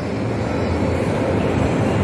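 Steady low rumble with a faint hum, the background noise of a large indoor space.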